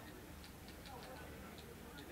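Faint, irregular clicking of photographers' camera shutters, several clicks a second, over low background chatter.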